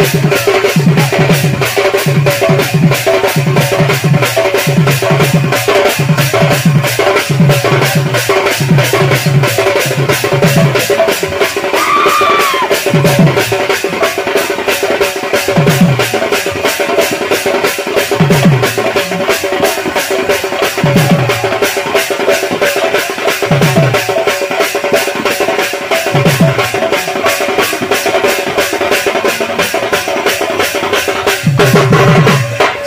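Loud rangin kirtan folk music: a fast, even clicking percussion beat over a steady held drone, with low drum strokes that come quickly in the first dozen seconds and then thin out to one every couple of seconds.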